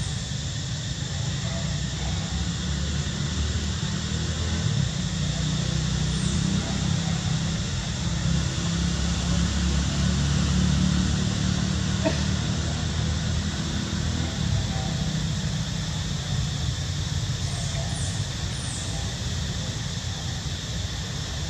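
Steady outdoor background noise: a low rumble with an even hiss over it, and no distinct calls.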